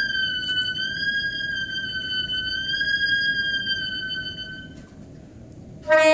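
Saxophone holding one very high note in the altissimo register with slight bends in pitch, fading out a little over a second before the end. A new, lower note begins right at the end.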